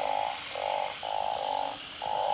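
A chorus of narrow-mouthed frogs (อึ่ง) calling in a rain-flooded field: repeated croaks, each about half a second long with short gaps, about four in two seconds. This is the breeding chorus that rain sets off.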